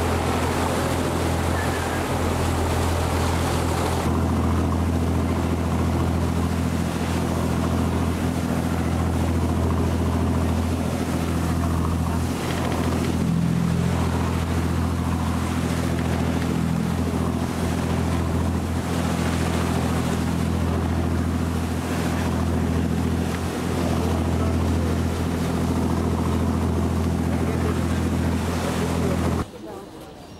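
A boat's inboard engine running steadily under way, an even low drone, with the wash of choppy water and wind over it. The sound drops off abruptly just before the end.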